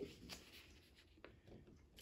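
Near silence, with faint rustling and a couple of soft ticks from a paper cutout being folded and creased by hand on a tabletop.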